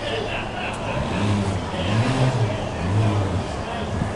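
Lexus LC's engine running as the car creeps forward, its note rising and falling in about three short throttle swells from about a second in.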